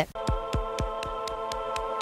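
Electronic news-bulletin ident music: a held synth chord over a steady pulse of deep beats, about four a second, each with a short tick on top.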